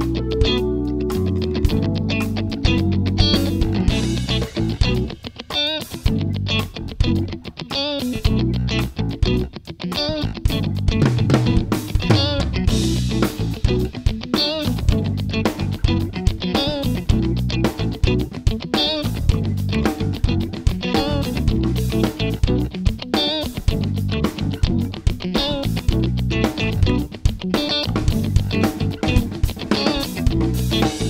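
Yamaha drum kit played live with dense, rapid hits, along to a rock backing track of distorted electric guitar and bass guitar. The music drops back briefly about five seconds and again about nine seconds in.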